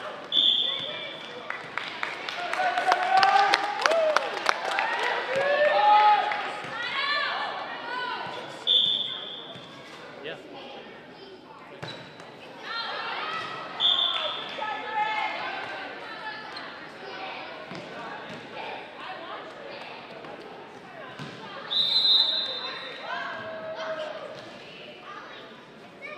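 Indoor volleyball match: a referee's whistle blows four short steady blasts, while players and spectators shout and cheer. Ball hits and bounces ring out in the echoing gym, busiest a few seconds in.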